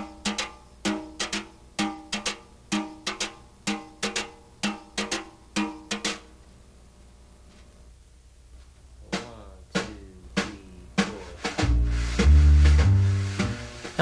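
Wire brush tapping the traditional swing pattern on a snare drum, played with the right hand: crisp, evenly repeating taps, each followed by a brief ring from the drum head. The playing stops about six seconds in and returns more faintly around nine seconds. Near the end, low bass notes come in under the brush.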